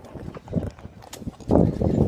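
Handling noise on a phone's microphone: irregular rubbing and low knocks as the phone is moved about, loudest near the end.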